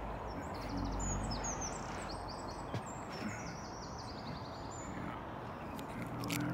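Outdoor background noise, a steady hiss over a low rumble, with small birds chirping in quick runs of short high notes during the first couple of seconds. A single sharp click comes a little before the middle.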